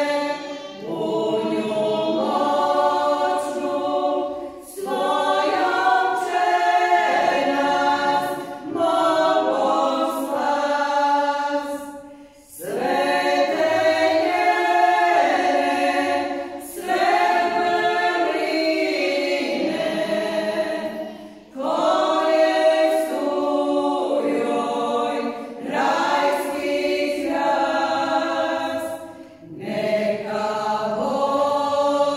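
A women's folk vocal group singing a church song a cappella, in long phrases with brief pauses for breath between them.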